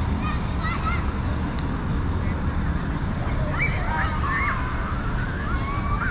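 Steady low outdoor city rumble, with a few short, wavering high calls near the start and again around the middle.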